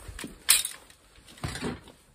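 Metal tools being handled in a plastic storage box: a sharp clatter about half a second in, then a softer rustle and knock around a second and a half.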